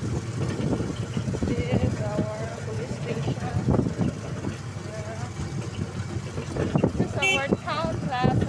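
Motorcycle engine of a motorized tricycle running, with road noise, while riding along a street; voices come through over it, clearest near the end.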